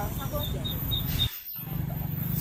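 Faint, indistinct chatter of people gathered around a registration table over a steady low rumble, with a few short, high chirps about half a second to a second in. The sound drops out briefly about one and a half seconds in, then the low rumble resumes.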